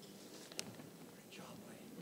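Faint room sound with low, indistinct voices and scattered soft clicks and rustles, one sharper click about half a second in.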